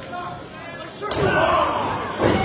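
A wrestler's body slamming onto the ring canvas about a second in, one sharp thud, followed at once by the crowd shouting.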